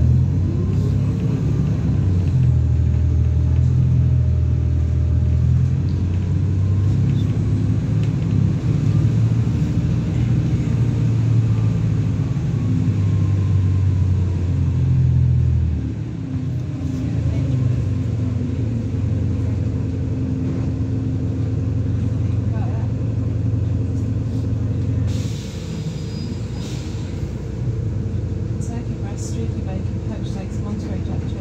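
A single-decker bus's diesel engine running under way, heard from inside the passenger cabin as a steady low drone. The engine note drops a little past halfway and again later, with a short hiss about five-sixths of the way through.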